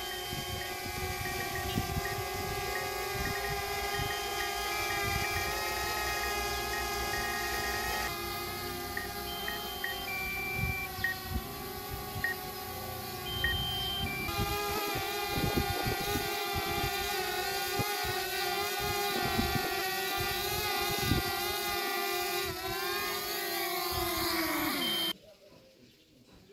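A small toy quadcopter drone's motors and propellers whirring at a steady pitch. Near the end the pitch drops as the motors spin down, then the sound stops abruptly.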